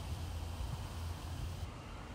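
Steady low background rumble with a faint even hiss, and no distinct event.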